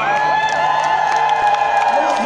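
Concert crowd cheering and screaming, many high voices holding long shrieks at once.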